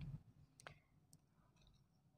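Near silence with two faint, sharp clicks, the first a little over half a second in and the second just after a second.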